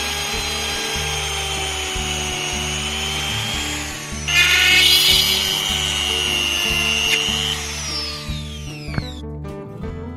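Rotary multitool with a small drill bit, whining at high speed as it bores into a wooden block. The whine breaks off briefly about four seconds in and comes back louder, then falls in pitch as the tool spins down near the end.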